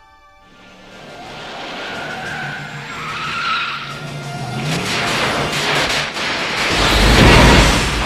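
A DeLorean accelerating hard with tyres skidding, the roar building steadily and ending in a loud, deep boom about seven seconds in.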